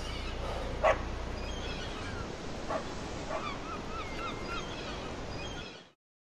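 Seal barking and calling over the steady wash of sea water: one loud short bark about a second in, a couple of weaker ones, then a run of quick rising-and-falling yelps, about four a second. The sound cuts off abruptly just before the end.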